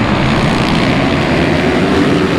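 A pack of supermoto motorcycles' single-cylinder engines running together as the field races away from the start, a loud, steady mass of engine noise.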